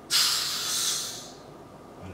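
A De Watère rosé champagne bottle being uncorked gently: the cork comes free with a soft hiss of escaping gas instead of a pop, starting suddenly and fading out over about a second. The quiet sigh is the sign of a correctly opened bottle, with the cork held and the bottle turned slowly at a slight tilt.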